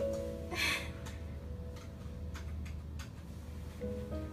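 Background music with held notes fades out about half a second in and comes back near the end. In the gap, over a steady low hum, come a few faint clicks like a computer mouse or keyboard, as the hearing aid's settings are being adjusted.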